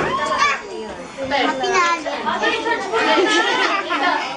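Children chattering and calling out over one another, several voices at once, with a brief lull about a second in.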